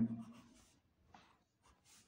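Faint, brief scratches of a pencil on a paper page, a few light strokes spread over the moment, after the tail of a spoken word.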